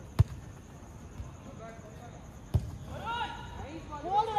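A football kicked twice, two sharp thuds about two and a half seconds apart, with players' distant shouts near the end.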